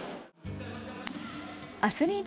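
Judo practice-hall noise cuts off abruptly about a third of a second in, followed by steady background music with low sustained notes.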